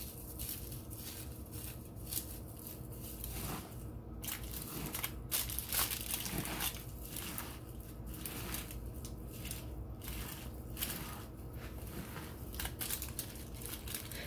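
Hands kneading raw ground beef with broken wheat crackers, with irregular crunching and crackling as the cracker pieces are crushed into the meat and the foil lining the pan crinkles. A faint steady low hum lies underneath.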